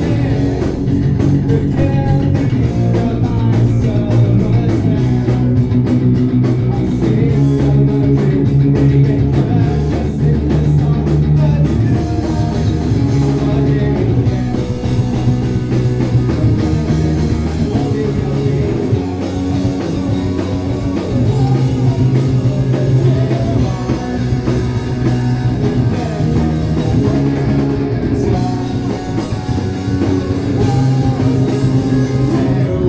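Live punk-pop rock band playing: electric guitar, electric bass and drum kit, with a male voice singing.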